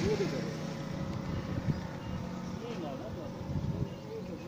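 Al Ghazi tractor's diesel engine idling steadily, with people talking in the background.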